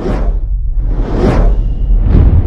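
Logo-reveal sound effect: two whooshes, one right at the start and one just over a second in, over a deep, steady bass rumble.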